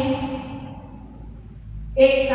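A woman's voice reading aloud in long, steady held tones trails off in the first half-second, followed by a pause with only a low hum; the voice starts again abruptly at the very end.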